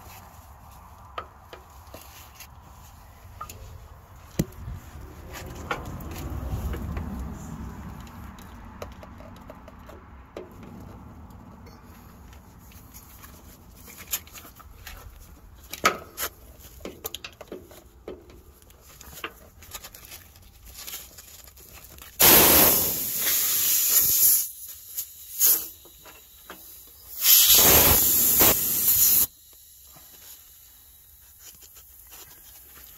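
Compressed air hissing out of a disconnected air line of a Freightliner Cascadia's cab air-spring suspension, in two loud bursts of about two seconds each near the end. Before that, scattered light clicks and scrapes of a screwdriver prying at the metal fittings.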